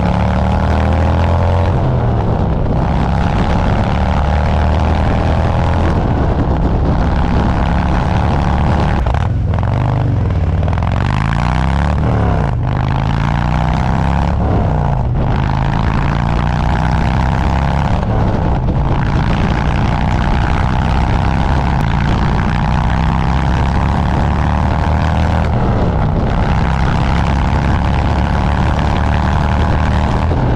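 Harley-Davidson Road Glide's V-twin running loud and steady under way at road speed. The engine pitch slowly rises and falls, with a few brief breaks as the throttle changes.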